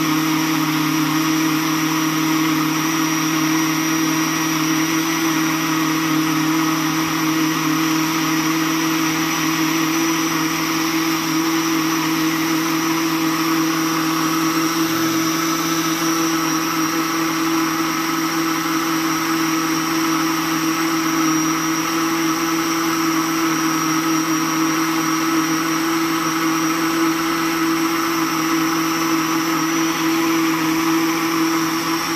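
Electric countertop blender running steadily at one speed, grinding soaked rice and water into a fine batter: an even motor whine over a strong low hum, with no change in pitch or level.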